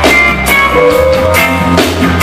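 Live reggae band playing an instrumental passage: electric guitar and bass guitar over drums, with drum hits about every half second.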